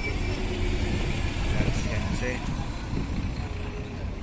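A city bus's engine idling close by, a steady low rumble, with people talking faintly around it.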